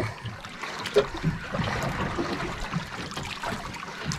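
Sea water lapping and splashing against the hull of a small outrigger boat, a steady wash of noise.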